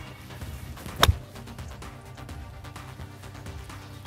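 Background music, with one sharp click about a second in: a forged iron striking a golf ball off the turf.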